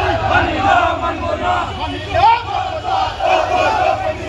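A large crowd of marching protesters shouting slogans, many men's voices at once without a break.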